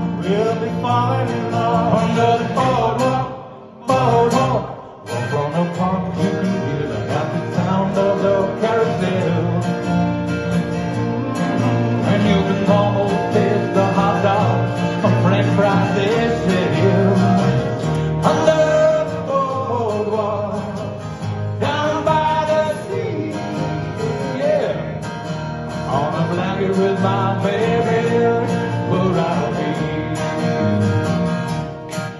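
Live acoustic music: two acoustic guitars strummed while a man sings. The sound drops away briefly about four seconds in, then carries on.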